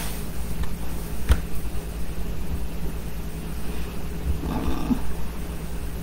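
Steady low electrical hum with a single sharp click about a second in, and a faint brief rustle near the end.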